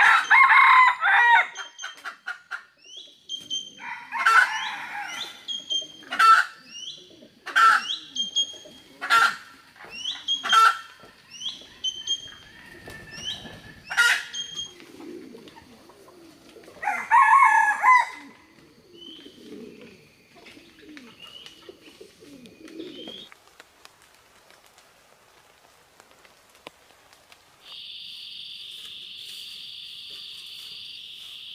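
A rooster crowing three times, with sharp bird calls repeating about every second and a half between the crows and small rising chirps of other birds. Near the end a steady, high-pitched insect drone sets in.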